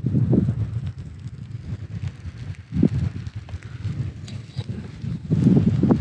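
Wind buffeting the microphone: a low, uneven rumble that swells in gusts about half a second in, around the middle and again near the end.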